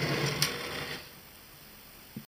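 Handling noise as a small metal-plated motor unit is turned round on a workbench: a scraping rustle with a sharp click about half a second in, dying away after about a second.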